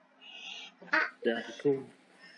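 Short wordless voice sounds: a faint hiss, then three brief vocal bursts in the second half.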